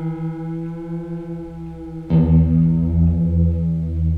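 Electric guitar played through a pedal's wobbling vibrato-type modulation setting: a note rings on with a wavering, pulsing quality, and a new, lower note is struck about two seconds in.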